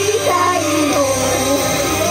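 Live idol-pop song: a young woman singing a high melodic line into a handheld microphone over a loud backing track played through a stage PA.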